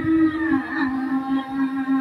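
Buddhist prayer chanting: voices hold one long, drawn-out note at a steady pitch.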